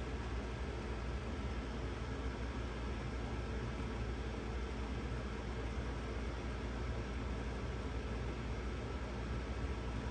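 Steady, unchanging background hiss with a low hum underneath, such as a fan or air conditioning running; no distinct events stand out.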